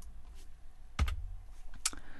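A few sharp clicks of computer keyboard keys, the loudest about a second in.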